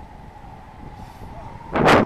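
Steady airflow noise in flight, then a sudden loud gust buffeting the microphone for about a third of a second near the end.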